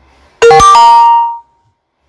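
Loud electronic chime from the Messenger chat app, marking the chatbot button reply just sent: a quick click followed by a few bright tones that ring for about a second and fade out.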